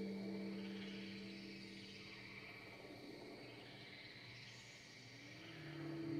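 Ambient electronic drone music thinning out: a low steady tone holds while the upper tones fade, leaving a faint high hissing, chirring texture. About five and a half seconds in the drone drops lower and a rising tone leads a swell back up.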